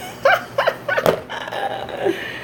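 A woman laughing in a few short, high-pitched bursts, followed by a single sharp knock about a second in.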